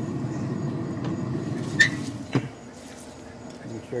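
Steady low rumble, then a click and a thump about two and a half seconds in as the pellet smoker's steel lid is swung shut; after the thump the rumble is much quieter.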